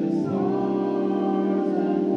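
Live band music carried by sustained keyboard chords, held steady, moving to a new chord about a third of a second in.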